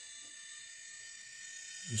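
Small geared electric motor of a U.S. Solid motorized ball valve running steadily with a high whine, driving the brass ball valve closed under power.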